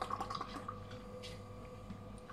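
Beer poured from an aluminium can into a stemmed glass: liquid running into the glass and fizzing. A patter of small crackles is heard in the first half-second or so, then thins out.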